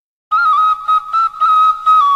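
Solo flute melody starting about a third of a second in. It plays a high, held note decorated with quick turns, with short breaks between phrases.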